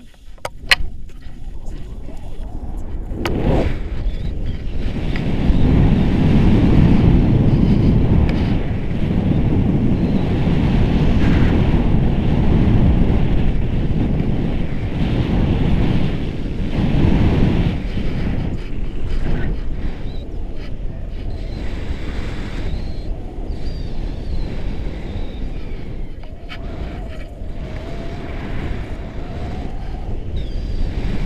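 Wind buffeting the microphone of a selfie-stick camera on a tandem paraglider as it launches and flies: loud, steady wind noise that builds over the first few seconds, is strongest through the middle and eases a little towards the end. A couple of sharp clicks come right at the start.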